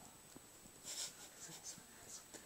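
Faint, brief rustling or scratching, a couple of soft brushes about a second in and again shortly after, over quiet room tone.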